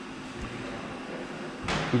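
Steady background hum and hiss of the lab room, with a faint low bump about half a second in; a man starts speaking near the end.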